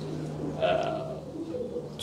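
Racing pigeons cooing faintly in the loft, over a low steady hum.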